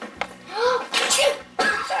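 A child sneezes once: a short voiced "ah" that bends in pitch, then a loud hissy burst about a second in, followed by a quick gasp near the end.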